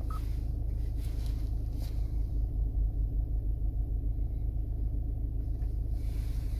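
Steady low rumble of a Hyundai Tucson's idling engine heard inside the cabin, pulsing a little more from about two seconds in, with a few faint clicks early on.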